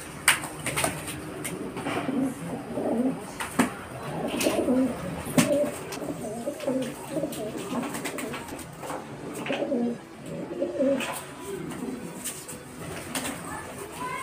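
Pigeons cooing over and over in low, warbling calls while they fight, with sharp slaps and clicks of flapping wings scattered throughout.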